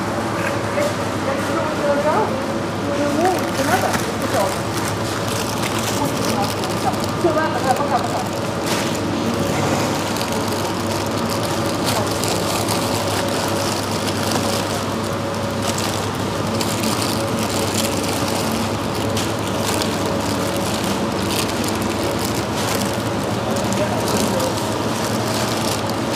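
Supermarket ambience: a steady multi-tone hum, typical of refrigerated display cases and store ventilation, under indistinct voices of nearby shoppers that are most noticeable in the first few seconds.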